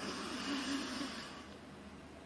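Quran reciter drawing a long breath close to the microphone in the pause between recited verses, a soft rush of air lasting about a second and a half.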